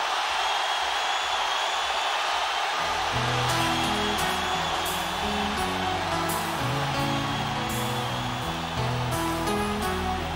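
A large stadium crowd cheering and roaring for about three seconds. Then an acoustic guitar starts picking a slow melody of single low notes over the continuing crowd noise.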